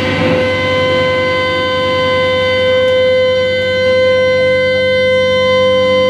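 Electric guitar amp feedback: the band's playing breaks off just after the start, leaving one steady, loud pitched tone with overtones that hangs on unchanged.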